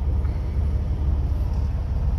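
Semi-truck's diesel engine idling, heard from inside the cab as a steady low rumble.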